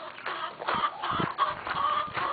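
Chickens clucking.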